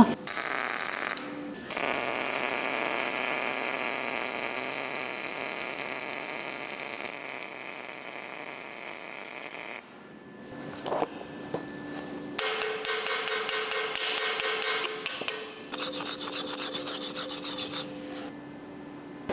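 Gasless flux-cored MIG welding arc on about 2.5 mm stainless steel plate at raised current, a steady hiss. A brief start, then one long pass of about eight seconds, then after a pause two shorter runs near the end.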